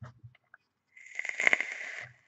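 Threaded brass sections of an H-Stone Bane clone mechanical mod being twisted tight by hand: a gritty metal-on-metal scraping with small clicks and a faint ring, starting about a second in.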